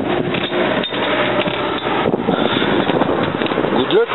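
Wind rushing and buffeting over the microphone of a camera on a moving tanker truck, over the truck's running and road noise. A voice starts right at the end.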